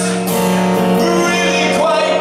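A man singing live into a microphone while strumming an amplified acoustic-electric guitar.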